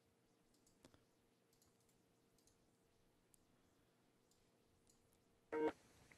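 Near silence with scattered faint clicks, then near the end a short electronic tone from Skype as a call connects.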